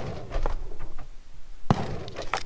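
Pump-action shotgun (Mossberg 500) being handled and loaded: a sharp metallic click right at the start and another near the end with a brief ringing tail, as shells are pushed into the magazine tube.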